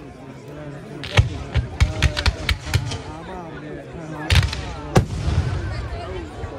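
Fireworks display going off: a series of sharp bangs from bursting shells, a quick cluster of them around two seconds in and two loud reports in the last two seconds. Crowd chatter carries on underneath.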